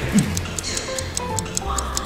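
Fast, even ticking, about four ticks a second, over light background music.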